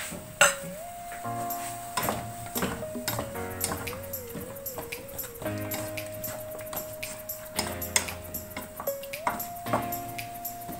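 Background music with a slow held melody, over a wooden spatula knocking and scraping against a pan as the meat is stirred; the sharpest knock comes about half a second in.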